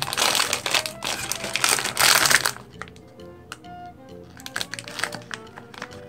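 Foil blind-bag wrapper crinkling loudly as it is torn and pulled open for about two and a half seconds, then fainter crackles as the figure is taken out, over background music.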